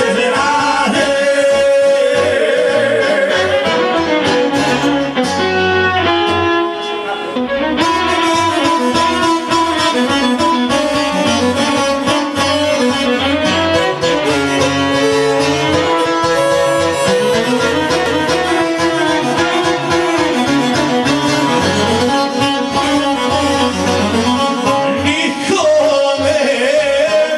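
Live Bosnian folk (izvorna/sevdah) band music: a long-necked saz and a Korg keyboard playing a continuous tune, with singing.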